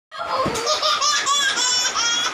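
A baby laughing out loud in a quick string of short, high-pitched laughs.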